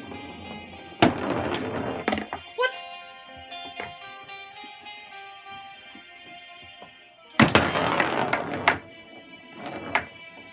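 Tabletop foosball being played over background music. There are two loud bursts of knocking and rattling from the rods, figures and ball: one about a second in and one at about seven and a half seconds, each lasting over a second.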